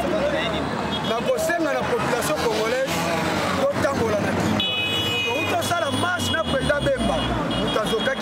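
A man speaking into a handheld microphone in the middle of a crowd, with a low rumble of background noise. From about halfway through, a long high-pitched steady tone sounds behind his voice for about three seconds.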